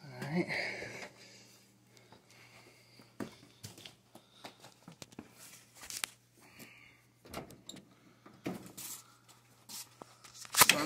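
Faint scattered clicks and knocks of handling work, a few seconds apart, over a low steady hum.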